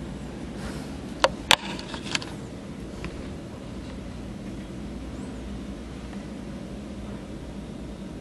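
Steady low hum and hiss with no music playing, broken by a few sharp clicks between about one and two seconds in.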